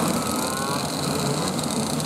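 A pack of 125cc two-stroke kart engines running at part throttle on the rolling formation lap, heard at a distance. Several engine notes overlap and glide slowly in pitch.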